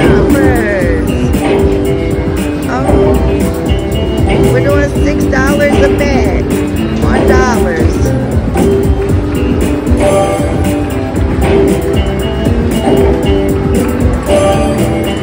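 Cash Crop slot machine playing its bonus-feature music and jingling sound effects loudly and without a break, with melodic notes and swooping tones.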